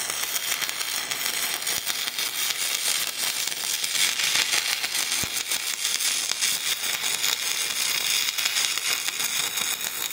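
Stick-welding arc from an Everlast 256Si at 200 amps burning a 3/16-inch 7024 electrode: a steady crackling hiss with spatter. The arc runs on without the machine cutting out.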